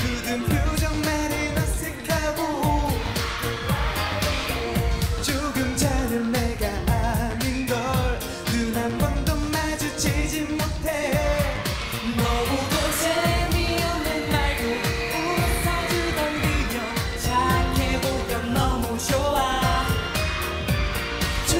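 A K-pop dance-pop song performed live: a male vocalist sings into a handheld microphone over a backing track with a steady, driving beat.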